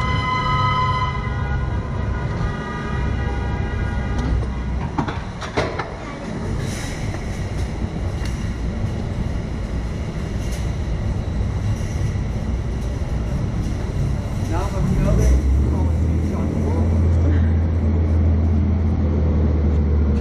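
Steady low rumble with a few knocks. A pitched, horn-like tone fades out in the first second, and a deeper steady hum sets in about 15 seconds in.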